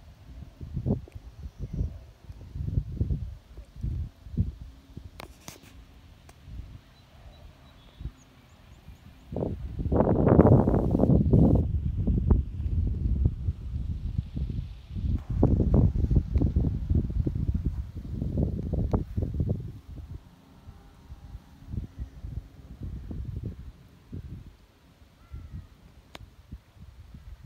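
Wind buffeting a phone's microphone outdoors: irregular low rumbling gusts that come and go, strongest in a long stretch through the middle.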